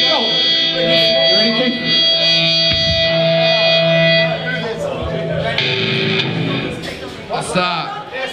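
Electric guitar ringing on through its amplifier in a steady held tone that stops about four seconds in. Voices shout in the room, and a shorter held tone sounds near six seconds.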